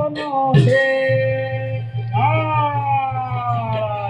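Assamese bhaona devotional singing: a voice holding long notes that slide up at the start and sink slowly, over a steady low drone.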